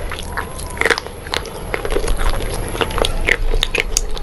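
Close-miked chewing of a crumbly grey substance, with many small sharp crunches and crackles through the mouthful.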